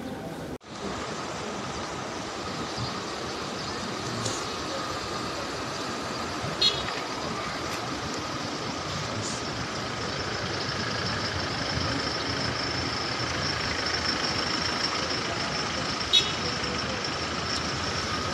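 Cars of a motorcade driving slowly past at close range: steady engine and tyre noise, with a few brief sharp high sounds scattered through it.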